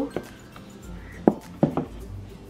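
Hands handling a rigid cardboard gift box on a tabletop: a few light knocks and taps as it is gripped before the lid comes off. The clearest taps fall a little past a second in and again about half a second later.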